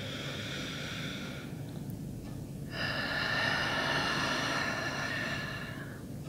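A person breathing slowly and audibly: two long breaths, the second longer and louder.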